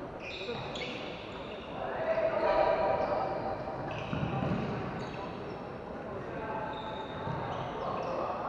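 Floorball game in a large sports hall: players calling out, loudest about two seconds in, with short squeaks of shoes on the wooden floor and knocks of sticks on the ball.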